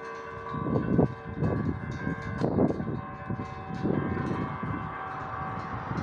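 A bell ringing on after a strike, several steady tones hanging in the air and slowly fading. Wind buffets the microphone in irregular gusts, the loudest sounds here.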